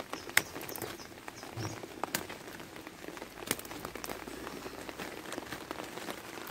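Light rain falling, drops ticking irregularly, with three sharper taps standing out.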